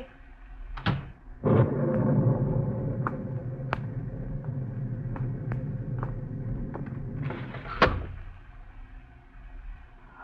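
Radio-drama sound effects of a door and rain: a latch clicks about a second in, then steady heavy rain comes up as the door opens and runs with scattered taps, until the door bangs shut near eight seconds and the rain drops back to faint.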